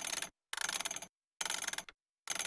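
Cartoon sound effect: three short bursts of rapid ratchet-like mechanical clicking, cut off by dead silence between each.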